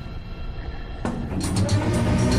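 Background music added to the soundtrack: a quieter stretch, then a fuller section with sharp percussive hits cutting in about a second in.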